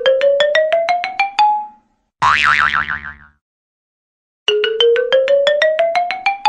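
Cartoonish comic sound effects: a quick run of about a dozen short plucked notes climbing in pitch, a wobbling boing about two seconds in, then the same climbing run again near the end.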